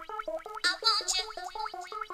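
Makina dance music from a DJ mix, in a section without a bass drum: a rapid run of short, stabbed synthesizer notes hopping between pitches, with a brighter swept synth sound about halfway through.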